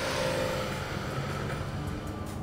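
A 2013 Porsche Boxster S's 3.4-litre flat-six engine and tyres as the car drives past, the engine note dropping slightly in pitch as it goes by and the sound slowly fading as it pulls away.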